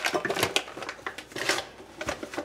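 Kitchen handling noise: a run of soft, irregular clicks and rustles as a paper flour bag and a metal measuring cup are handled after a scoop of flour goes into a plastic bowl.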